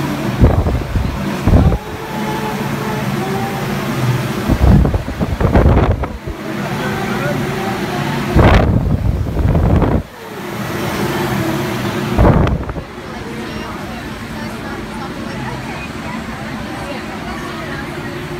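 Air from a large industrial floor fan buffeting the microphone in several loud rumbling gusts, over a steady hum; the gusts stop about 13 seconds in, leaving a quieter steady background.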